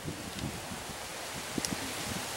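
Steady rustling with irregular low buffeting: wind in the trees and on the microphone. A few small ticks about one and a half seconds in.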